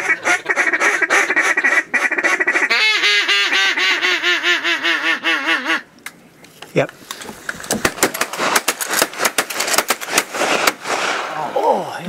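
Ducks quacking and honking: a fast chatter of calls, then wavering drawn-out calls for a few seconds. In the second half, a rapid run of sharp cracks and clicks follows.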